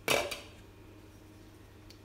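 A short clatter of metal kitchenware, a utensil or cookware knocking, right at the start, ringing briefly and dying away within half a second. A faint click follows near the end.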